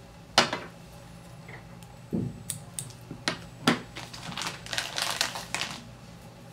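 Sharp clicks and light taps of small fly-tying tools and materials being handled at the vise: one loud click about half a second in, a duller knock about two seconds in, then a quickening run of small clicks and ticks over the last few seconds.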